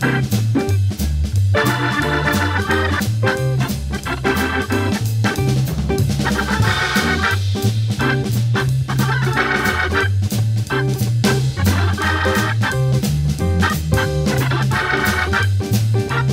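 Hammond B3 tonewheel organ playing a swinging jazz blues, with a bass line of separate stepping notes under organ chords and a steady drum beat.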